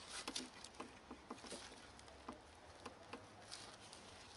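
Faint, irregular light clicks and taps of gloved hands and tools working on metal parts under a Vespa PX scooter's engine.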